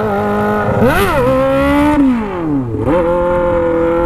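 Honda CB 600F Hornet inline-four engine revving through its aftermarket stainless exhaust: the revs rise sharply about a second in, fall away, then pick up again near three seconds and hold, climbing slowly as the bike is lifted into a wheelie. Wind noise runs underneath.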